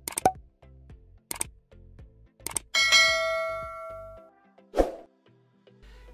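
A few sharp clicks, then a bright metallic ding that rings and fades over about a second and a half, followed by a short thud near the end, all over background music with a steady beat.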